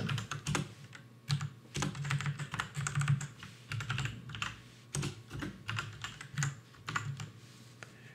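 Typing on a computer keyboard: irregular runs of keystroke clicks, thinning out near the end.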